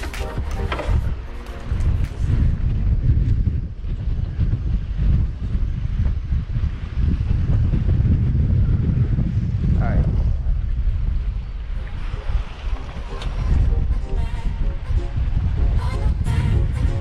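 Wind buffeting an action camera's microphone on an open boat: a gusty low rumble that rises and falls, with a brief rising tone about ten seconds in.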